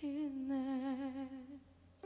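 A woman's voice, unaccompanied, holding one long note with vibrato, fading out about a second and a half in.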